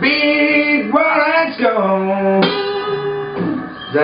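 Ovation Super Adamas acoustic guitar playing an instrumental lead break: a run of single notes, several of them bent in pitch, over the guitar's own chords.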